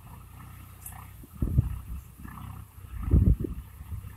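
Swaraj tractor's diesel engine running steadily at a distance as it pulls a cultivator, with wind buffeting the microphone in gusts about a second and a half in and again around three seconds in; the gusts are the loudest sound.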